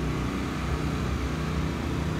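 Steady low engine hum with an even background of outdoor noise.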